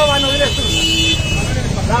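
Men's raised voices over a constant low rumble of street traffic. A steady high tone runs underneath and stops about a second in.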